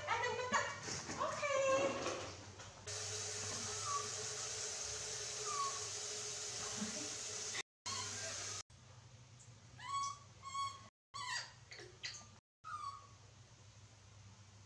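Young macaques giving short, high-pitched squeaky cries, a dense burst in the first two seconds and a run of brief rising whimpering calls in the second half. In between, a steady hiss over a low hum lasts several seconds and then cuts off abruptly.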